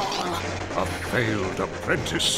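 Lightsaber sound effects in a duel: a steady low hum comes in about a third of a second in, with pitch sweeps rising and falling as the blades are swung.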